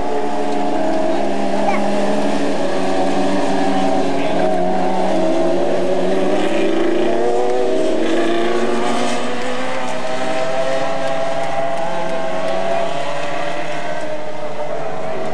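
Engines of several open-wheel dirt-track race cars running together, their pitch slowly rising and falling as the cars circle the track.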